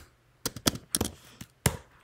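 Computer keyboard keystrokes: a handful of separate key clicks with short gaps between them, while a line of code is entered.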